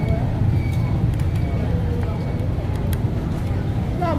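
Busy eatery background: a steady low rumble under indistinct chatter, with a few light clicks.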